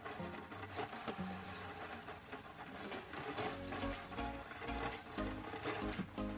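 Scrubbing and light patter of a cloth worked around a stainless steel sink drain, with scattered small clicks and knocks. Background music plays underneath and picks up a low beat about halfway through.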